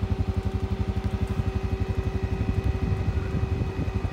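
2015 Honda Rubicon ATV's single-cylinder engine running steadily at low speed, an even putter of about ten beats a second.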